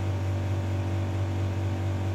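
Air conditioner running noisily: a steady low hum with a few fainter steady tones above it, unchanging throughout. It runs loud like this when the room is off its set temperature.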